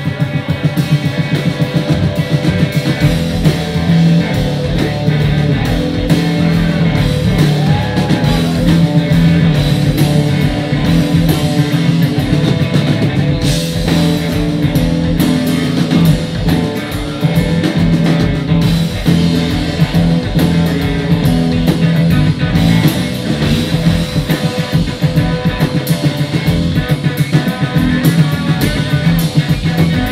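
A live rock trio playing loud and without a break: electric guitar, electric bass and a drum kit.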